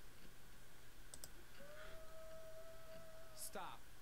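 A few faint computer mouse clicks about a second in. A faint steady tone follows for about two seconds, and a short falling vocal sound comes near the end.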